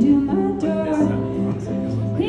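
A woman singing over her own Takamine acoustic guitar, holding and bending her sung notes.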